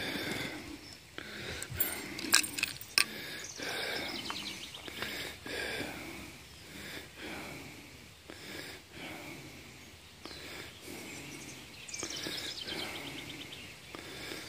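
Quiet outdoor field ambience, a low steady background hiss, with a few sharp clicks about two to three seconds in.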